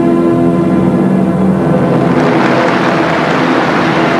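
Orchestral skating music holding sustained notes, joined about halfway through by an audience applauding as the program ends.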